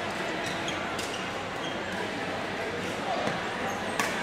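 Badminton doubles rally: a few sharp racket hits on the shuttlecock and players' footsteps on the court floor, over indistinct voices in the background.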